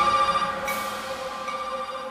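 Electronic music dying away: with the beat gone, sustained bell-like synth tones ring on and slowly fade.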